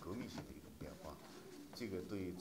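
Faint speech: a man's voice talking quietly.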